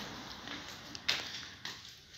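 Two light taps, one sharp about a second in and a softer one just after, over quiet background noise.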